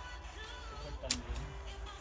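A single sharp strike of a digging tool into the soil about a second in, over a low steady rumble.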